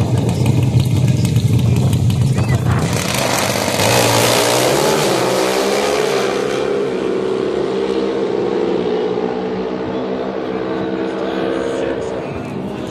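Pro Stock Motorcycle drag bikes revving at the starting line. They launch with a loud burst about three seconds in and run away down the strip, their engine note fading as they pull away.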